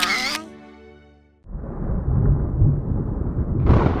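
A sung note fades away in the first second. After a short hush, a cartoon thunder rumble starts, low and continuous, with a brighter crackle building just before the end.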